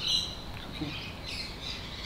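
Birds calling: a sharp, high call right at the start, then scattered high chirps.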